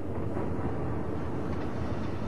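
A steady, low rumbling noise with no clear pitch, the noise intro that precedes the song.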